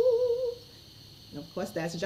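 A woman singing unaccompanied holds the final note of a worship song with even vibrato, then breaks off about half a second in. After a short pause, speech begins near the end.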